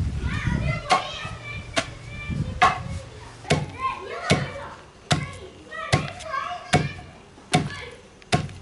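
Long wooden pestle pounding dried pieces in a tall wooden mortar: nine dull, even knocks, a little more than one a second.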